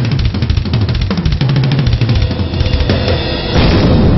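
Metal music with a drum kit played fast and hard: a dense, even run of rapid drum strokes under the band. The sound grows louder and fuller about three and a half seconds in.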